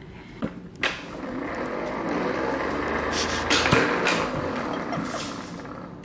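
An automatic dog ball launcher running: two light clicks, then its motor humming with a faint high whine for a couple of seconds, a loud noisy burst a little past halfway as it throws a ball, and the hum stopping just after.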